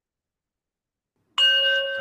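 A single struck bell chime about a second and a half in, ringing on with a steady clear tone, sounded in a guided-breathing video to close the breathing exercise.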